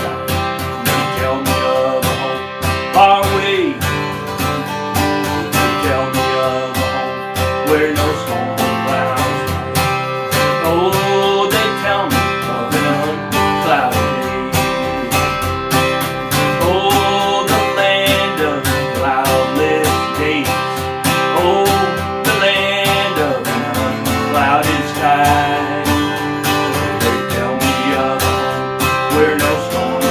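A man singing a gospel song in a country style, strumming an acoustic guitar; a woman's voice joins in near the end.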